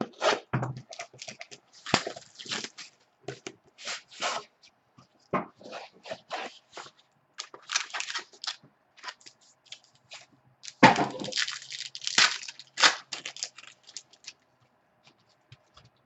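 Plastic packaging of a sealed baseball-card box being torn open and crinkled by hand: an irregular run of rips and crackles, loudest a little past the middle and dying away near the end.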